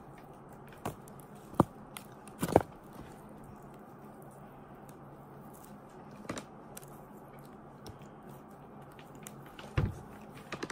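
Steamed crab shell being cracked and picked apart by hand: a few scattered sharp cracks and snaps, the loudest about two and a half seconds in, over a faint steady low hum.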